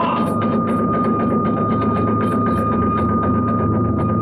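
Iwami kagura accompaniment: a bamboo flute holds one long high note over fast, steady drum beats and clashing hand cymbals as the dance fight goes on.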